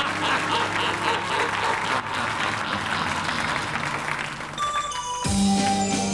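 Studio audience applauding. Near the end a hip-hop dance track starts, with a deep bass note coming in.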